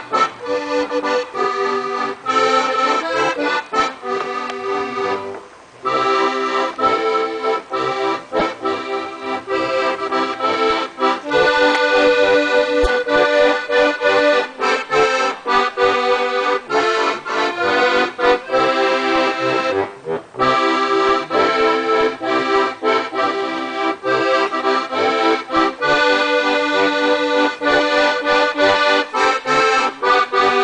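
Two Steirische Harmonikas (diatonic button accordions) playing a traditional tune together in duet, with two brief pauses between phrases.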